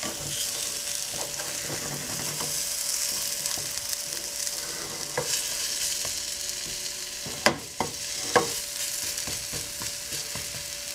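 Chickpea-flour omelet frying in a ceramic frying pan over a gas flame, with a steady sizzle while a plastic slotted spatula scrapes and pushes it to fold it over. Two sharp knocks of the spatula against the pan come late on.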